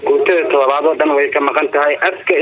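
Speech only: a voice talking without a pause, with a narrow, radio-like sound.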